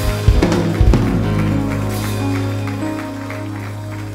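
Church worship band playing softly under the service: a few drum-kit hits in the first second, then held chords ringing on and slowly fading.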